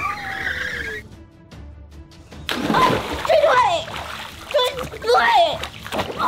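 Water splashing and churning as a child thrashes in a swimming pool, starting about two and a half seconds in, with shouted cries of "help!" over background music.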